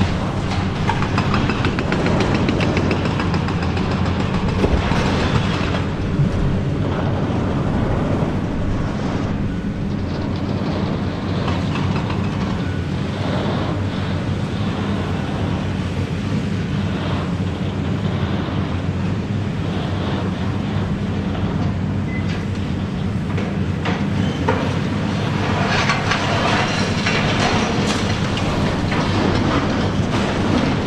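A high-reach demolition excavator's diesel engine runs steadily under load while its crusher jaws break concrete, with debris crumbling and clattering down. The clatter is heaviest in the first few seconds and again in the last few.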